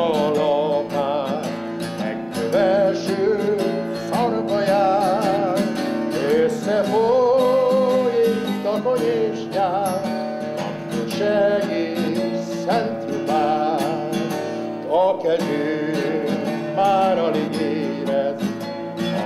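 A man singing a song to his own strummed acoustic guitar, the chords ringing under a voice that moves through long melodic phrases.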